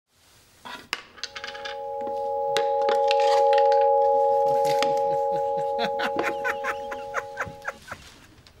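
Intro sting: a sustained electronic chord of a few steady tones that swells up and then slowly fades, cutting off just before the end. Over it come many sharp clicks and clinks and, near the end, brief snatches of voices.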